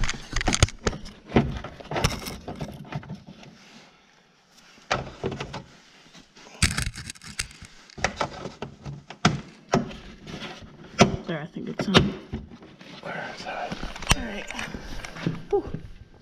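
Irregular clicks, knocks and rattles of hands handling and fitting a round plastic cover onto the back of a UTV headlight, with the camera being bumped around.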